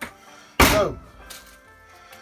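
A single sharp thunk a little over half a second in, a hard object knocked or set down, with a short falling ring as it dies away; a faint click comes just before it.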